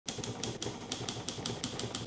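Typewriter keys clattering in a rapid, uneven run of about six or seven strikes a second.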